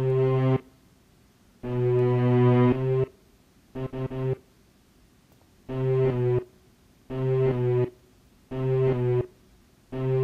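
Synth loop patterns from Roland Zenbeats' Electro Composer playing back, two patterns in turn. It is a keyboard-like pitched tone in short held phrases, about half a second to a second long, with silent gaps between.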